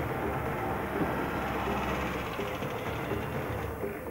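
An old Mazda car's engine running close by, a steady low rumble.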